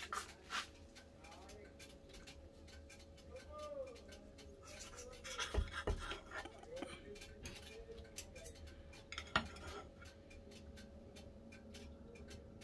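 Knife and fork cutting a steak on a ceramic plate: faint scraping with a few sharp clicks of metal on the plate, the loudest about five and a half and nine and a half seconds in.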